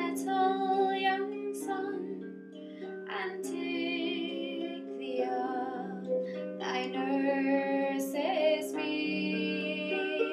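Harp plucked in a slow accompaniment, with a woman's voice singing long, wavering notes over it in several phrases.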